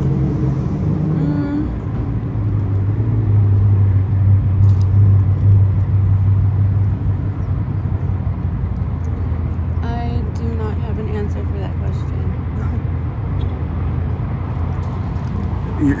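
A car engine running close by: a low hum that swells about two seconds in and eases off after about seven seconds, over steady outdoor background noise.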